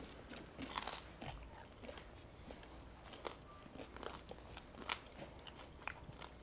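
Faint, scattered crunches of chewing a hard, crisp waffle-pressed sushi rice cake.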